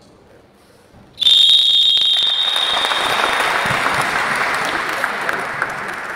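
A referee's whistle blown in one long blast about a second in, followed by applause from the crowd.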